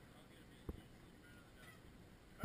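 Near silence with a single soft thump about two-thirds of a second in: a footstep on the boat's deck.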